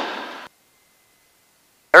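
A faint hiss fading away in about half a second, then dead silence for over a second: the cockpit audio track is gated silent between words.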